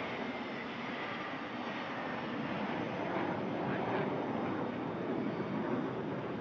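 Jet engines of the modified Boeing 747 Shuttle Carrier Aircraft running steadily as it rolls down the runway just after landing.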